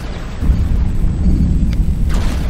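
Lightning-strike sound effect: a deep, rumbling, thunder-like crackle that gets louder about half a second in.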